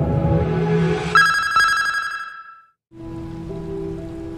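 TV network opening-ident music ends on a bright, ringing chime about a second in, which fades away into a moment of silence. Near three seconds a quiet, sustained film-score tone begins.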